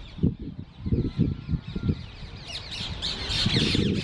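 Birds squawking, a few calls at first and then many short, harsh calls overlapping from about two and a half seconds in, over irregular low rumbles.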